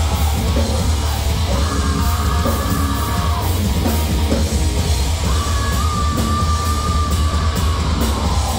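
Heavy metal band playing live in a garage rehearsal: distorted electric guitars and a full drum kit, loud and steady. Over it, a long held high note comes in about a second and a half in and slides down, and another is held from about five seconds in to the end.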